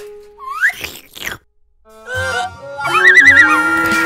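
Cartoon soundtrack: a quick rising whistle-like glide about half a second in, a brief silence, then playful score music returns with a wavering trill near the end.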